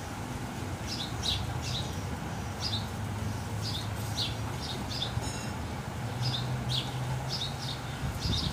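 A small bird chirping over and over, short falling chirps about two a second, over a low steady hum.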